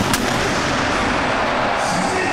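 A football kicked with one sharp strike right at the start, followed by steady crowd noise from the stadium.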